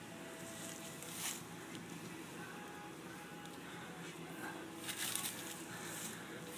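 Faint rustling of tall grass and weeds as a rake is pushed and pulled through them, with brief louder swishes about a second in and again near five seconds.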